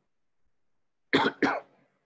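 A man coughs twice in quick succession, about a second in, after a moment of dead silence.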